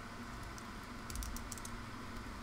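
Faint plastic clicks and handling noise from the joints of a small articulated plastic figure being posed by hand, with a quick cluster of clicks about a second in, over a low steady hum.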